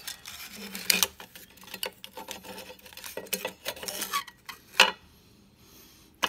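A circuit board with its capacitors knocking and scraping against a steel power-supply chassis as it is fitted in by hand: a run of uneven clicks and clatters, with the sharpest knocks about a second in and near five seconds, then quiet for the last second.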